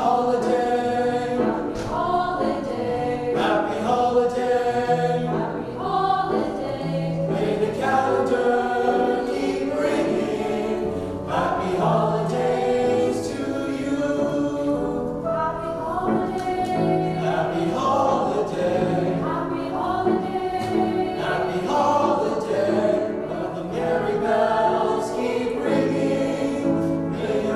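Small mixed-voice choir of teenagers singing in several-part harmony, held chords changing about every second.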